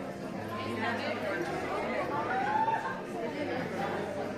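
Indistinct chatter of many shoppers talking at once in a large hall, with one voice standing out about two and a half seconds in.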